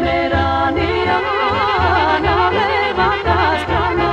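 A woman singing a Macedonian folk song with a wide vibrato on long held notes, over band backing with a steady pulsing bass line.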